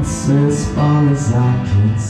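Acoustic guitar strummed live, sustained chords with a few strum strokes.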